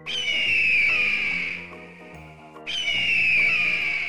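Two screeching calls of a bird of prey, each a raspy high cry that falls slightly in pitch and lasts about a second and a half, the second coming about two and a half seconds after the first, over soft background music.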